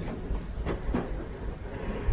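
Soft knocks and rustling of cotton towels being folded and pressed flat on a table, over a steady low rumble.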